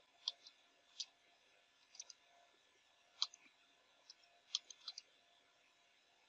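Computer keyboard keystrokes as a command is typed: about a dozen faint, sharp key clicks at an uneven pace, with pauses of up to a second between some of them.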